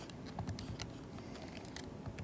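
Faint, irregular clicking of calculator keys being pressed in quick succession as a calculation is keyed in.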